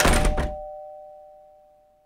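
Two-note ding-dong chime, a higher then a lower tone, ringing out and fading away. A short burst of noise with a low thud comes over it in the first half second.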